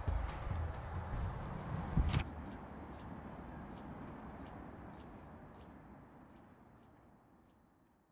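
Quiet open-air field ambience, a soft even rush with faint ticks, fading steadily away to silence. A single sharp click sounds about two seconds in.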